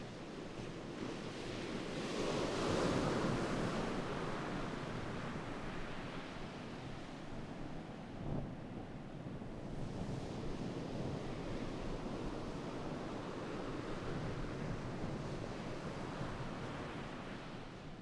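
Sea waves washing on the shore with some wind, swelling to a peak about three seconds in and then holding steady.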